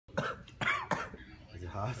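A man coughing three short, sharp coughs, then a brief laugh, from the burn of a Carolina Reaper chili pepper he has just eaten.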